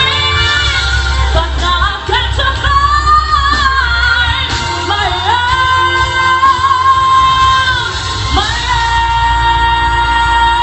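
A woman singing a pop song live over backing music, holding two long high notes in the second half.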